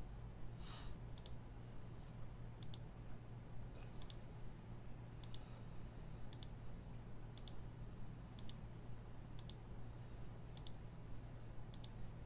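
Computer mouse clicking repeatedly, about one click a second, each a quick double tick of the button pressed and released, as a web page is re-run over and over. A faint steady low hum lies underneath.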